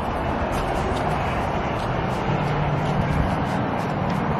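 Steady rushing outdoor noise on an open ship's balcony, wind on the microphone with a low rumble underneath, and a faint low hum for about a second midway.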